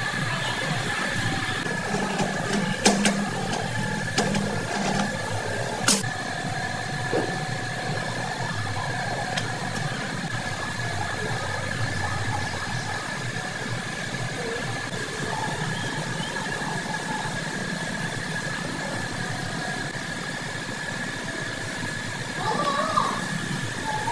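Steady engine-like machine hum with a constant high whine over it. Two sharp metallic clinks come about three and six seconds in.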